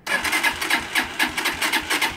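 Lexmoto Arrow 125's electric starter cranking its single-cylinder four-stroke engine in a fast, even churn for about two seconds, then cutting off without the engine catching: a cold start tried without the choke.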